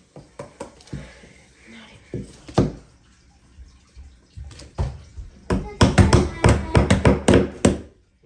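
Small hammer tapping nails into a thin wooden kit board. A few scattered taps come first, then a quick run of about a dozen sharper strikes, roughly five a second, near the end.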